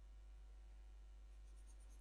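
Near silence: faint scratching of a stylus shading on a pen tablet over a steady low hum, with a few light ticks near the end.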